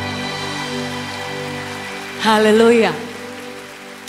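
The final held chord of a live string orchestra and band fading out under a steady wash of audience applause. A short, loud voice with a wavering pitch cuts in about two seconds in and stops within a second.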